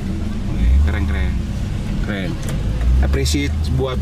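Low car engine rumble heard inside a moving car's cabin, swelling twice, with people talking over it.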